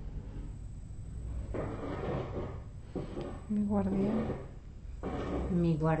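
A woman's soft, halting speech with breathy pauses, over a steady low rumble.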